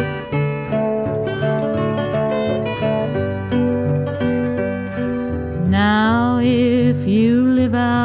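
Acoustic guitar playing an instrumental break of a folk song, picked single notes over a bass line. A little over five seconds in, a held melody line with vibrato comes in over the guitar.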